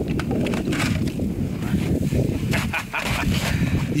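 A team of sled dogs barking and yelping together in a dense, continuous, excited chorus.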